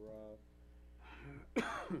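A man coughs once, suddenly and loudly, near the end, after a drawn-out spoken 'uh'.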